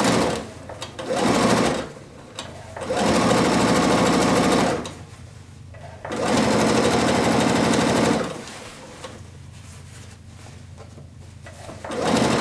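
Electronic domestic sewing machine stitching a seam in starts and stops: a short run at the start, then two runs of about two seconds each with pauses between. It is much quieter in the last few seconds.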